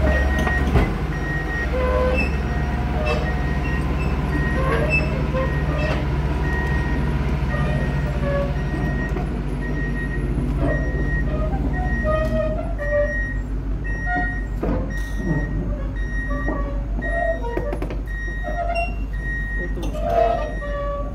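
Diesel engine of a Sumitomo SP-110 crawler pile driver running steadily, its note changing about twelve seconds in, with a high-pitched warning beeper sounding in short, evenly spaced beeps.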